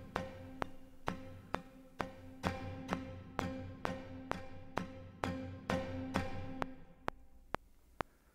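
Sampled orchestral strings playing back: a held chord under a steady row of short woody strikes about twice a second, col legno shorts (strings struck with the back of the bow) played from a keyboard. The held chord drops out about two-thirds of the way through while the strikes carry on, fading.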